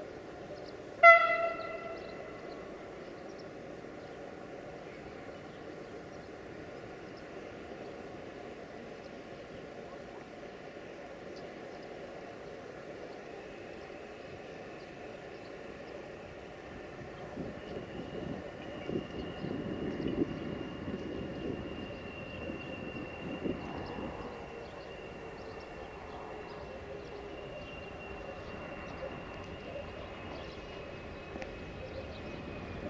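Bombardier TRAXX electric locomotive of class 480 gives one short horn blast about a second in as it approaches. Then the train rolls in with a steady low rumble. The rumble swells into a louder clatter of wheels on the rails between about 17 and 24 seconds, along with a thin, high whine that slowly falls in pitch.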